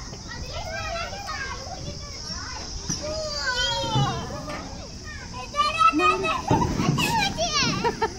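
Young children's excited, high-pitched voices calling out while playing on a playground slide, getting louder in the last two and a half seconds.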